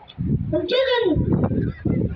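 A boy's raised voice calling out into a microphone and over a PA loudspeaker, in one long drawn-out phrase followed by the start of another near the end.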